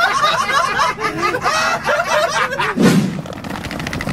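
Two men laughing loudly together in hearty, repeated bursts, then a short low thud about three seconds in.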